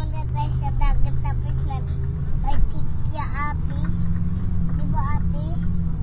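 Steady engine and road drone of a moving vehicle, its pitch stepping up a little about three and a half seconds in.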